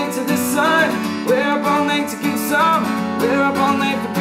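Steel-string acoustic guitar strummed in a steady rhythm, with a man singing over it.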